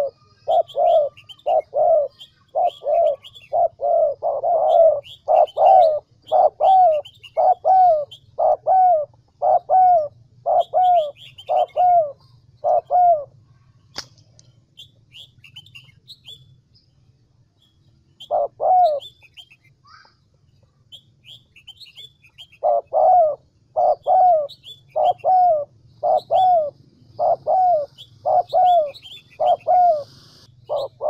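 A decoy spotted dove cooing: a long run of regular coos, about one and a half a second, broken by a pause of several seconds in the middle, then resuming. Small birds chirp faintly above it.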